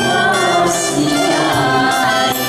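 A small mixed group of two men and two women singing a Japanese song together into microphones over instrumental accompaniment.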